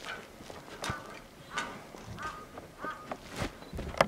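Polar bear's claws and paws knocking and clanking against the metal bars of its cage as it climbs, in several sharp separate knocks, the loudest one near the end. Short high calls come in between the knocks.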